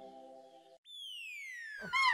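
Cartoon transition sound effect: a single whistle-like tone gliding steadily downward in pitch for just over a second, after the fading tail of a music chord. Another short swooping sound starts just at the end.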